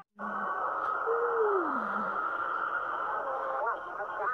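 Heavily distorted, edited electronic audio: a steady buzzing drone, with a single tone sliding down in pitch about a second in and short warbling voice-like fragments near the end. It begins after a momentary cut to silence.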